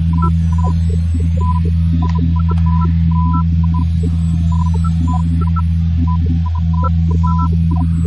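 A loud, steady low hum, with short high blips scattered irregularly over it.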